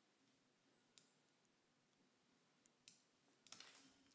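Near silence with a few faint computer-mouse clicks, and a short soft noise near the end.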